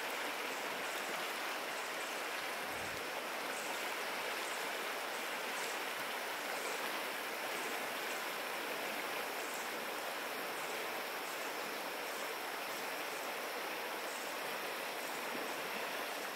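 Fast-flowing river current rushing steadily.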